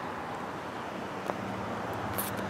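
Quiet outdoor background: a steady low hiss with a faint low hum that comes in about halfway through, and one small click.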